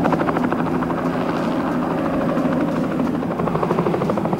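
Helicopter hovering while lifting a load on its sling line: a steady rotor beat with a constant engine hum.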